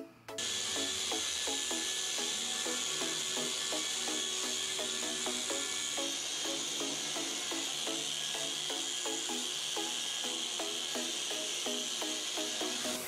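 Electric machine polisher running with its pad pressed on car paint: a steady whirring hiss, part of the polishing that evens out the paintwork before a coating. Background music with short repeated notes plays along.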